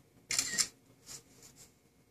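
Mac laptop's camera-shutter sound as a screenshot is taken: one short, bright burst about a third of a second in. Two faint keyboard clicks follow.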